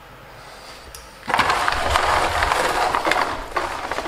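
Loud rough rubbing and rustling noise with deep bumps, starting suddenly about a second in: handling noise from the camera being picked up and moved by hand.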